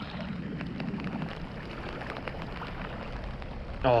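Steady outdoor wind noise on the microphone with scattered light ticks, typical of rain drops hitting the camera, and a faint low whir in the first second or so.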